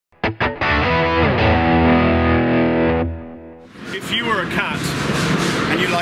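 Short distorted electric guitar sting: a few quick staccato hits, then a held chord with a note sliding down, fading out after about three seconds. Then the busy chatter of a crowded trade-show hall with nearby voices.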